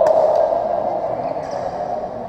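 A single sharp badminton racket strike on the shuttlecock right at the start. Under it is a sustained din of crowd voices in a large hall that slowly fades.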